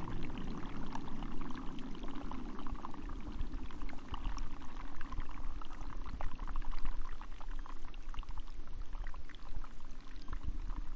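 Breaking waves heard from under the water: a steady rush of churning water, full of small crackles and pops from air bubbles.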